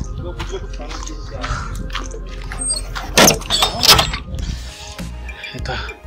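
Background music with a steady low hum, under handling noise and footsteps, with two louder sharp knocks about three and four seconds in.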